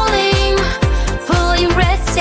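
AI-generated pop song from Udio: a sung vocal line, "the sun and moon are pulling… pulling red states blue", over a steady beat with a deep kick drum about twice a second.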